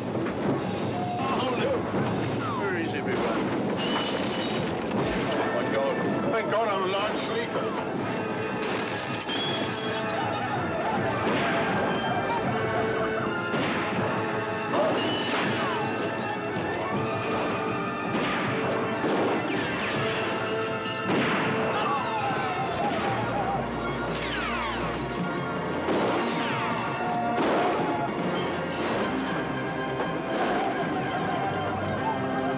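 A film action-scene soundtrack: dramatic music under loud shouting and yelling voices, with crashes and smashes breaking in throughout.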